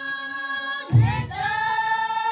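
A group of women singing a folk song in unison on long held notes. About a second in, a new note begins together with a low thump.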